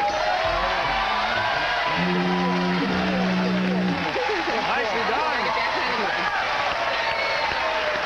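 Studio audience applauding and cheering with whoops. A short held musical note sounds from about two to four seconds in.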